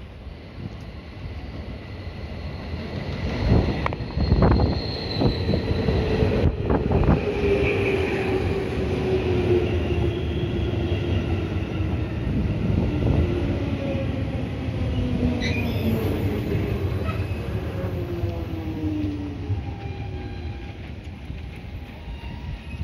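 A JR Central 211 series electric train, eight cars long, arriving and braking to a stop. It rolls in louder and louder, with a run of heavy wheel knocks about four seconds in. Then a long whine falls slowly in pitch as the train slows, and the sound fades near the end.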